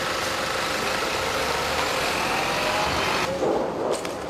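Bus engine idling steadily, an even running noise with a faint steady hum.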